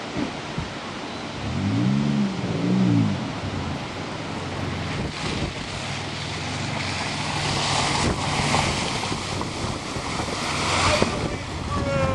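A 4x4 camper van's engine revving twice, each time rising and falling in pitch, then running steadily, with wind rushing on the microphone.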